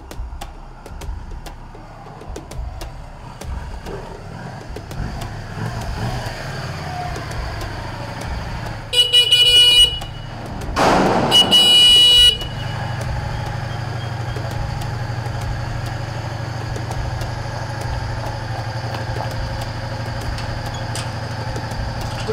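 Motorcycle horn sounding twice, each blast about a second long, with a brief rush of noise between them. After the second blast the motorcycle engine keeps running steadily at idle.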